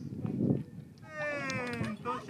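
Low background rumble, then about a second in a drawn-out high-pitched call that falls slowly in pitch for about a second.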